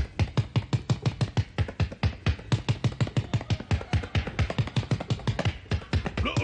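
Rapid, even drum-like thumping, about six to seven beats a second, a comic sound effect for what is heard through a stethoscope pressed to a stomach.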